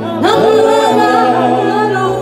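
Women singing a gospel worship song into microphones through a PA, with a group singing along. A new sung phrase swoops up into its note a moment in, over a steady low held note.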